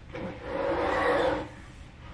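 Window blind being drawn up, a rattling swish lasting about a second.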